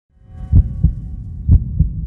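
Sound design for an animated logo intro: two heartbeat-like double thumps, about a second apart, over a low rumble, with a faint held chord in the first second.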